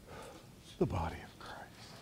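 A person's voice: a brief, low murmured utterance about a second in, with a quick falling pitch, against quiet church room tone.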